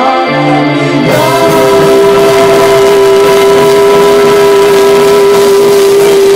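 Indie rock band playing live, with electric guitar, bass and keyboard. From about a second in, one long steady note is held over the band.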